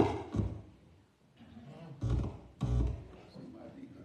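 A few separate low instrument notes with a sharp attack, one right at the start and two more about two seconds in, as church musicians get ready to play a song.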